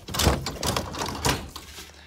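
Rustling and knocking from a phone being held and moved close against its microphone: a few short, irregular scrapes and bumps with some low rumble.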